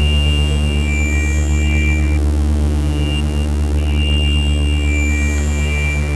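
Loud electronic drone score: a deep, steady hum with several held tones above it. High, thin tones sound over it for the first two seconds and come back from about four seconds in.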